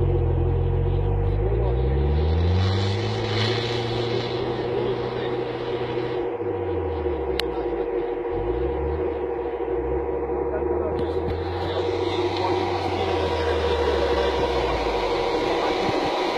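A 4x4's engine pulling through deep snow. It revs up over the first few seconds, eases off about six seconds in, then revs up again and holds steady, over a constant whine.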